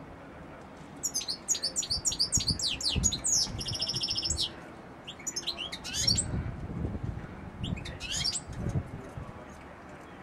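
A caged European goldfinch singing: a long burst of rapid, high twittering starting about a second in and ending in a buzzy trill, then two shorter twittering phrases later.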